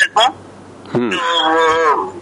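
A person's voice: a short syllable, then from about a second in a long drawn-out vowel held for about a second, its pitch wavering slightly.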